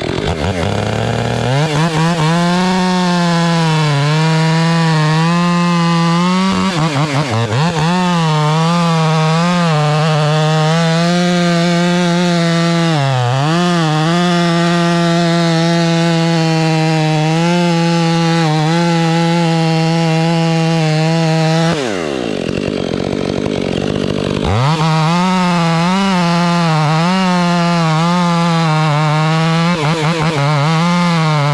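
Stihl MS 500i two-stroke chainsaw held at high revs, cutting into a walnut trunk. The engine note dips briefly a couple of times, drops off about 22 seconds in and climbs back to full revs a couple of seconds later.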